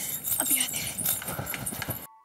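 Quick, irregular footsteps on a hard floor as a person walks briskly away.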